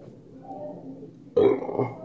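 A man's wordless voice sound: a faint murmur, then a short, louder voiced sound about one and a half seconds in, such as a hesitation noise or a burp.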